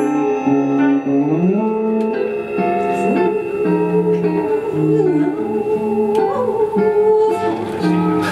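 Free-improvised ensemble music: electric guitar and saxophone playing together, a long held tone running under shifting notes that change every half second or so, with some sliding pitches.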